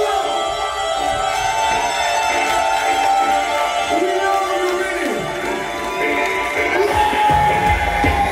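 Live dub band music: sustained guitar and synth tones with gliding pitched lines over them. A deep bass beat comes in near the end.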